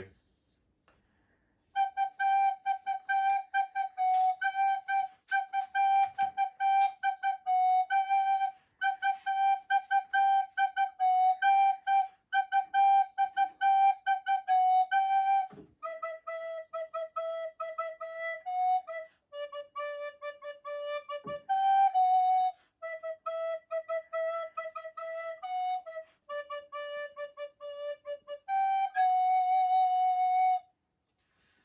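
Wooden recorder playing a melody line of short, quickly tongued notes, many of them repeated on the same pitch. It starts about two seconds in, moves down to lower notes about halfway through, and pauses briefly before a last phrase.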